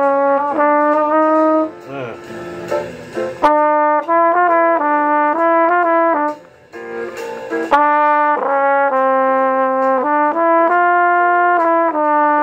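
Flugelhorn played solo, running through melodic phrases in practice, with two short breaks, about two seconds in and again about six seconds in.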